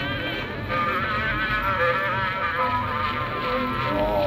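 An Edison Gem wax cylinder phonograph playing a wax cylinder recording about 124 years old through its acoustic horn. The music has a wavering melody and sounds thin, with almost no high treble.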